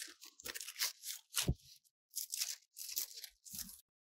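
Rustling and scraping of a vinyl record's sleeve as the record is slid out of its album jacket, in a series of crackly bursts with a soft thump about a second and a half in. It stops suddenly just before the end.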